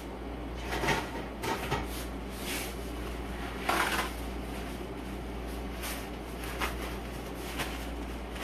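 Someone rummaging at a counter for a spoon: scattered light clicks and knocks of utensils and containers being moved, with a longer rustle about four seconds in.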